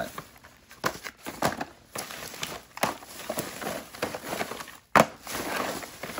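Thin plastic trash bag rustling and crinkling as hands dig through it and shift boxes, with irregular sharp crackles, the loudest about five seconds in.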